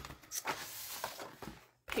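Paper rustling and light handling noise as sheets of patterned designer paper are shuffled and shown, with a few soft clicks; it fades near the end.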